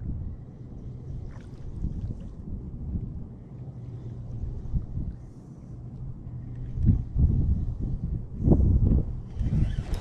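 Wind rumbling on the microphone over the steady low hum of a distant outboard motor. There are a few louder low thumps near the end.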